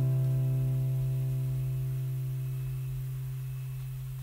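The last chord of an acoustic guitar ringing out, fading slowly and evenly with no new strum.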